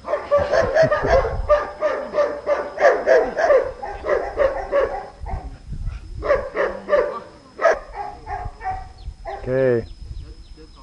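A small dog barking in rapid runs of short, high barks, several a second, with a brief lull a little past halfway; the dog is excited and jumping up at its handler.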